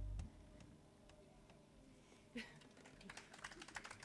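The last low notes of an acoustic folk band's final chord ring out and stop a moment in. Near silence follows, with scattered faint clicks and small handling noises that come more often in the second half.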